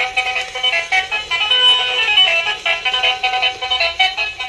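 Battery-powered light-up duck toy playing its built-in electronic tune, a quick run of thin, high-pitched synthesised notes from its small speaker.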